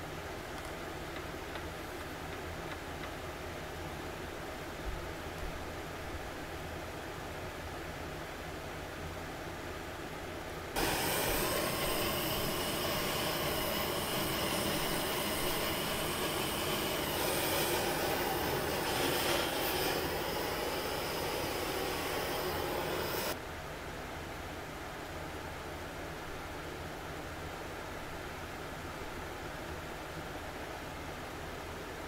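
Handheld gas torch burning with a steady hiss. It starts abruptly about eleven seconds in and cuts off suddenly about twelve seconds later, over a steady low shop background.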